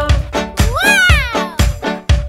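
Children's song backing music with a steady beat. About half a second in, a single animal cry rises and then falls in pitch over about a second.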